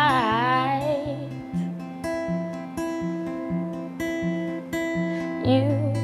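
Acoustic guitar playing a steady, repeating chord pattern. A woman's long sung note with vibrato trails off in the first second, and her singing comes back in near the end.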